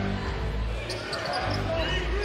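Game sounds from the basketball court: a basketball being dribbled on the hardwood floor, over low, held bass notes of arena music.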